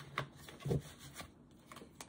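Tarot cards being handled: soft rubbing and a few light clicks of the cards, with a brief low voiced murmur less than a second in.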